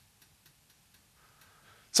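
Near quiet with a few faint, light ticks, unevenly spaced a few tenths of a second apart.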